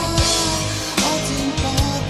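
Rock song played by a band: electric guitar with a drum kit keeping a steady beat.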